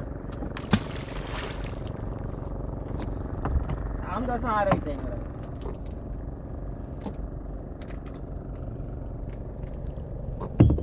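Fishing boat's engine running steadily at idle, a low even drone, with a brief voice calling out about four seconds in.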